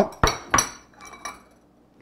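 A metal utensil clinking against a white ceramic bowl as the bowl is handled and set down: two sharp clinks with a brief high ring, about a quarter and half a second in, then a few fainter ones around a second in.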